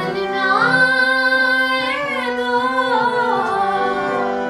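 A woman singing one long, ornamented phrase of a ghazal in Raag Aiman (Yaman) over a steady drone. The voice glides up about half a second in, holds high, and bends back down in the second half.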